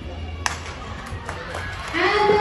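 A single sharp crack about half a second in: the starting signal as the runners leave their crouched start for a 400 m race. A few fainter ticks follow over a low background hum.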